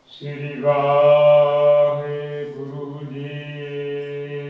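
A man chanting Sikh scripture (gurbani) in long, level held notes, a slow melodic recitation.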